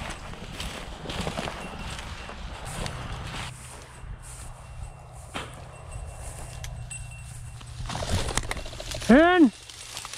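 Footsteps pushing through tall dry grass, the stems rustling and brushing, with scattered snaps. A person's short loud call rings out near the end.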